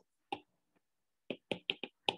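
Stylus tapping on a pen tablet as letters are handwritten: short sharp taps, one about a third of a second in and four in quick succession in the second half.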